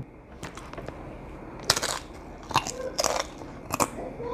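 Crisp corn tostada being bitten into and chewed: several sharp crunches from about a second and a half in.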